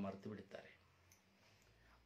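A man's speaking voice finishing a phrase, then a pause of near silence with a few faint clicks.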